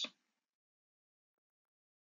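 Near silence: the tail of a voice fades out at the very start, then dead silence.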